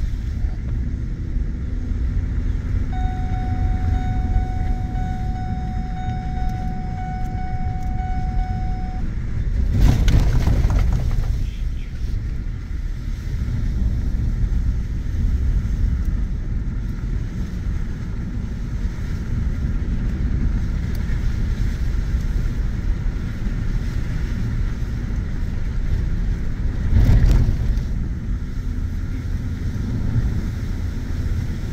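Ford F-150 pickup driving on a dirt road, heard from inside the cab: a steady low rumble of engine and tyres on the dirt. A steady high tone sounds for several seconds early on, and two louder rushes of noise come about ten seconds in and near the end.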